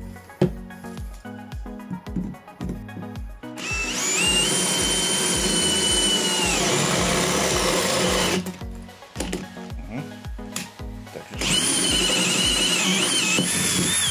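Villager Fuse VPL 8120 18 V brushless cordless drill boring a 13 mm hole through steel in second (high) gear. Its motor whine rises, holds for about four seconds and winds down. A second run starts about eleven seconds in, and there the pitch wavers as the drill labours, too much load for the high speed setting. Background music with a steady beat plays underneath.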